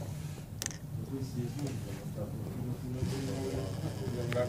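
LEGO Mindstorms NXT servo motor and plastic gears of a ball-sorting machine whirring steadily, with a sharp click about half a second in. People talk in the background.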